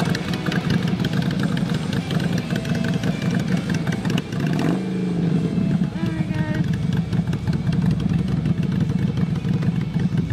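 Motorcycle engines idling side by side, a steady rapid low pulsing, with a brief shift in pitch about halfway through.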